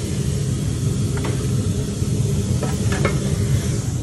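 Chopped chicken and cheese sizzling on a flat-top griddle while metal spatulas scrape and clack against the griddle a few times, over a steady low rumble.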